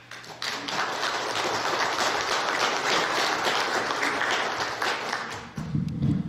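Congregation applauding the choir: a steady patter of many hands clapping that builds up just after the start and dies away near the end.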